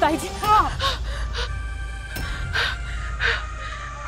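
A woman's voice crying out with a wavering pitch, followed by several short, sharp gasping breaths, over steady dramatic background music.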